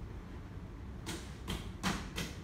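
Fingers shaping a small ball of wet clay, with three short taps of the hand on the clay in the second half, the last the loudest, over a low steady rumble.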